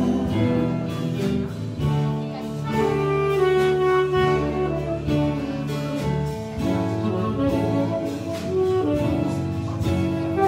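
A live band plays an instrumental passage, with a saxophone carrying the melody in held notes over guitars, keyboard and a steady drum beat.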